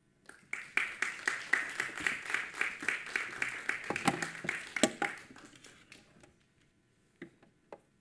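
Audience applause, starting about half a second in and dying away by about 6 s, followed by a couple of light knocks near the end.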